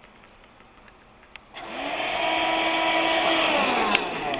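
Vacuum cleaner motor switched on about a second and a half in, its whine rising as it spins up, then running steadily. Near the end it is switched off with a click, and the whine starts to fall.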